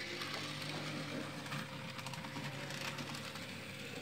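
Dapol N gauge Schools class locomotive test-running on DC after repair: its small electric motor hums steadily while the wheels click over the track. The hum drops away near the end.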